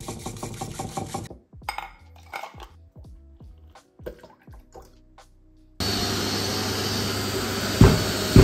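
A bamboo matcha whisk beating quickly and evenly in a bowl for about a second, then light kitchen clinks and milk being poured into a glass. About two-thirds of the way through, a construction worker's industrial vacuum starts abruptly and runs loud and steady, with a sharp knock near the end.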